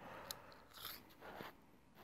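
Faint handling noises: a small click, then soft rustles as a tape measure is drawn out and laid along a sleeping bag's stuff sack.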